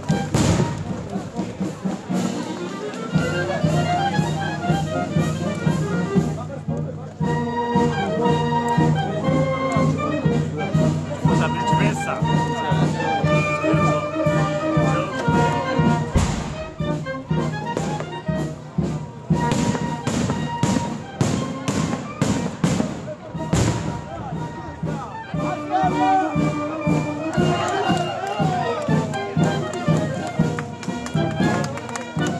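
Brass band playing. From about sixteen seconds in, a rapid string of sharp bangs runs for several seconds over the music.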